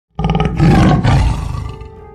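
A tiger roaring: one loud, low roar that starts abruptly and trails off over about a second and a half.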